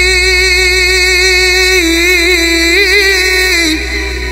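Male voice singing one long held note with vibrato. The note wavers in pitch about halfway through and fades out just before the end, over a steady low musical backing.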